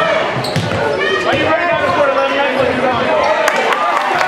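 Live game sound of a basketball game in a gym: a ball bouncing and sneakers squeaking on the hardwood court over the voices of the crowd. A burst of squeaks comes about a second in.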